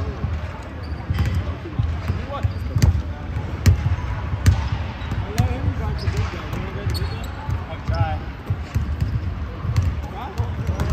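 Basketballs bouncing on a hardwood gym floor, short thuds at uneven intervals with sharp clicks among them, and players' voices in the background.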